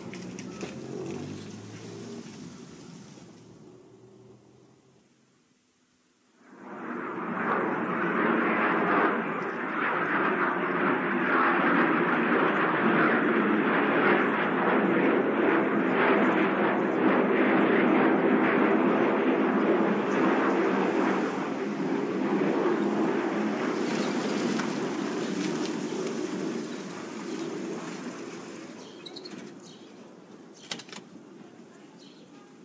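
Loud, steady engine noise that starts suddenly a few seconds in, holds for about twenty seconds and fades out near the end.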